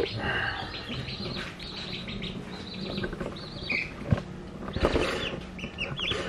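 Young chicks peeping in a brooder: many short, high-pitched chirps repeating throughout, with a couple of sharp knocks about four and five seconds in.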